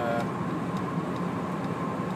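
Steady in-cabin drone of a Volvo V70 D5 driving on the road: tyre and road noise with the five-cylinder diesel engine running underneath.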